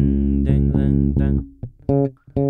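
Electric bass guitar played fingerstyle: one note held for about a second and a half that then fades, followed by a short plucked note near the end.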